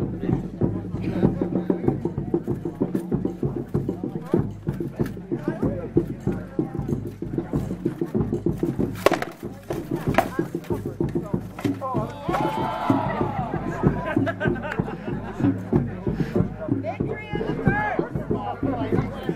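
Weapons striking shields and armour in an armoured sword-and-shield fight: a run of sharp knocks, the loudest about nine seconds in, over the voices of onlookers.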